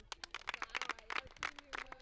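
Handling noise from a paper card and a handheld microphone: a rapid run of irregular sharp clicks and rustles.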